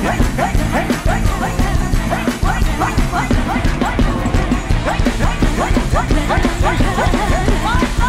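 Live rock band playing: drum kit and bass under a lead line of short, quickly repeated upward-sliding notes, about three a second.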